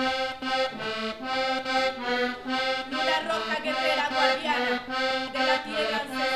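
Colombian-style button accordion playing a traditional tune in a steady rhythm of pulsing chords.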